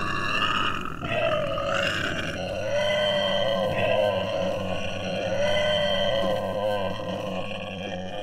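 A continuous, growling soundtrack effect: a steady low hum under a pitched tone that slowly rises and falls, easing off near the end.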